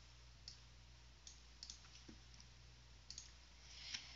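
Near silence with a few faint, scattered clicks of a computer mouse, over a low steady hum.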